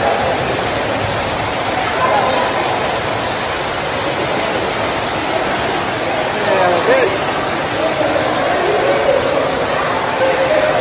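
Steady rush of water from an artificial rock waterfall pouring into an indoor pool, with children's voices and calls mixed in, one call standing out about seven seconds in.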